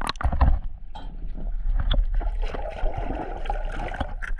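Lake water splashing and sloshing close to the microphone, with a few sharp knocks and a heavy thump in the first half second and a busier, uneven splashing later on.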